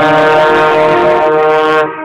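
Trombone holding a long, steady note, loud and close, within a concert band's sustained chord. The note is released shortly before the end.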